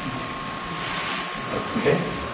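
Steady background hiss with a faint, thin steady hum running through it, under soft, indistinct voices; a man says "okay" near the end.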